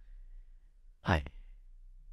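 A man's single short spoken syllable, falling in pitch, about a second in, set in otherwise quiet room tone with a faint low hum.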